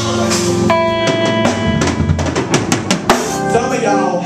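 Live band playing an instrumental passage: a drum kit with bass drum and snare under held keyboard chords and bass, breaking into a quick run of drum hits about two seconds in that ends on a hard accent.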